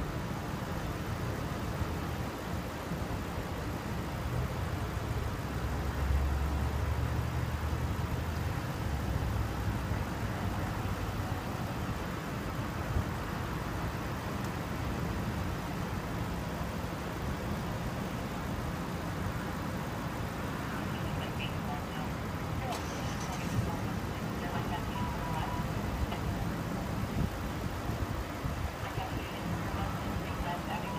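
A patrol car's engine idling close by: a steady low hum that grows louder for a few seconds about six seconds in.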